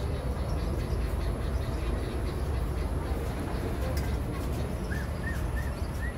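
Outdoor ambience with a steady low rumble, and near the end a short run of high, thin chirps, about three a second, from a bird.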